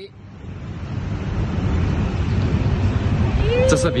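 Wind rumbling on the microphone, a steady low noise that fades up after a cut, with a voice starting near the end.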